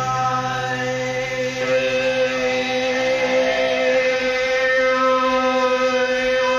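Live rock band music from a murky, lo-fi concert recording: a sustained droning chord of several held notes, steady throughout, after a strummed acoustic-guitar passage.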